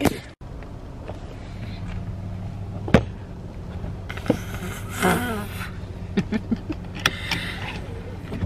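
Steady low hum of a running car heard inside the cabin, with a few sharp clicks and knocks from handling. Short bits of laughing and a sigh come near the middle and end.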